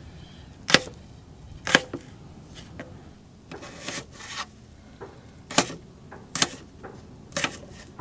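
Chef's knife dicing small potatoes on a plastic cutting board: several sharp knocks of the blade striking the board, spaced roughly a second apart, with a brief scraping sound about halfway through.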